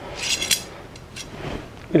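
Short metallic rattle and clink of a freshly cut length of steel brake line being handled, ending in a sharp click about half a second in, followed by a few faint small ticks.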